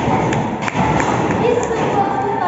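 A series of about five short, sharp knocks or thumps, irregularly spaced over two seconds, with a girl's speaking voice heard briefly.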